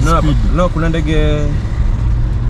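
A man's voice, with a drawn-out sound about a second in, over the steady low rumble of engine and road noise inside a moving car's cabin.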